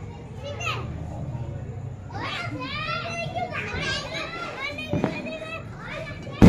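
Children's high-pitched voices calling and chattering in short bursts, with one sharp click about five seconds in.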